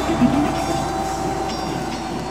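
Live rock band sound filling a large auditorium: a single held note over a dense low rumble, with a short loud knock about a quarter second in.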